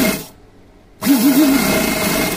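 Sewing machine stitching cotton fabric in short bursts. One run stops about a quarter second in, and the next starts about a second in, its hum wavering up and down as it runs.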